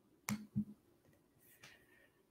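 Two short sharp clicks about a third of a second apart, then a fainter click.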